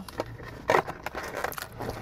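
Paper food packaging crackling and rustling as it is handled, in a few short crackles.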